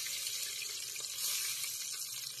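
Cornmeal-battered bowfin (mudfish) nuggets frying in a pot of oil at about 350 degrees, a steady sizzle.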